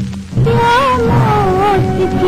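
Old Hindi film song playing: after a short dip, a high melody line with vibrato and ornamented slides comes in about half a second in over steady low accompaniment.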